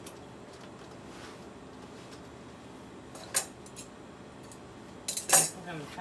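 Light metallic clinks and clicks as metal items are handled at an industrial sewing machine: a single sharp click about three and a half seconds in, then a louder cluster of clicks near the end.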